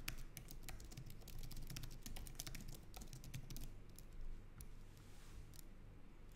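Typing on a computer keyboard: a fast run of faint key clicks that thins out after about four seconds.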